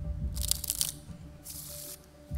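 A deck of playing cards being shuffled by hand: a quick crisp rattle of cards about half a second in, then a softer hiss of cards near the end.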